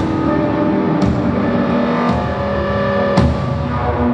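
Loud live experimental music: several droning tones are held steadily, layered from guitar and electronics. A sharp percussive hit cuts through about once a second.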